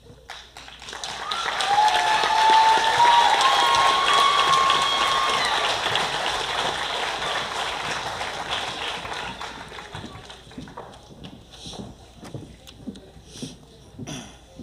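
Audience applause with a few shouted cheers, swelling about a second in and then fading away over the next several seconds into scattered claps and clicks.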